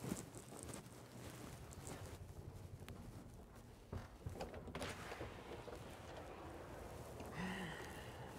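Faint footsteps along a hallway with scattered light knocks, and near the end a short squeak as a door is opened.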